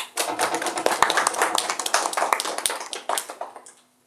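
Applause: many hands clapping, starting suddenly and dying away near the end.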